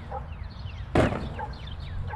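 Birds chirping, a string of short falling calls repeating over a steady low rumble, with one loud sharp thump about a second in.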